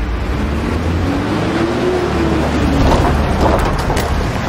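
Police vehicles driving in: a steady, loud engine and tyre rumble, with a faint tone that rises and falls once in the first half.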